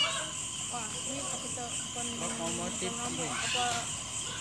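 Crickets chirping steadily in a high, continuous trill, with faint voices of people talking in the background.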